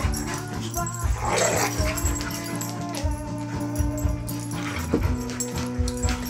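Two dogs play-fighting: barks, yips and scuffling over background music with long held notes that change about five seconds in.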